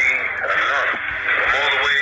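A man's voice talking, with background music and a bass line underneath.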